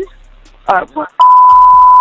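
A censor bleep: one steady, loud, high-pitched tone about a second long, starting a little past halfway, laid over words in a recorded emergency phone call.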